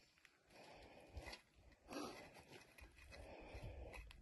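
Near silence, with a couple of faint brief noises around the middle.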